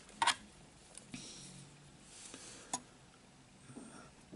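A few light clicks of a plastic model-kit sprue being handled between the fingers: a sharp click just after the start and another a little before three seconds in, over quiet room tone.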